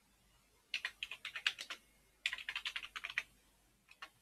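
Typing on a computer keyboard: two quick runs of keystrokes, each about a second long, then a single key press near the end as a command is entered.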